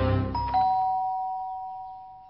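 Background music cuts off about half a second in as a two-tone doorbell chime sounds, a higher note then a lower one, both ringing on and slowly fading.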